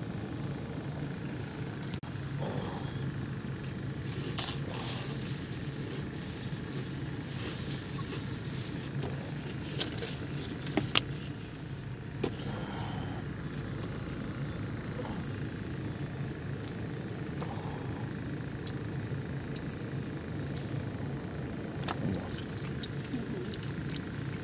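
Steady low hum of an idling car, with scattered small clicks and crackles on top.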